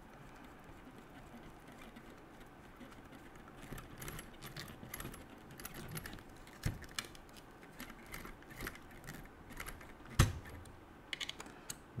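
Light clicks and ticks of a hex driver turning engine-mount screws into a nitro RC car chassis, scattered from about four seconds in, with one sharper knock near ten seconds.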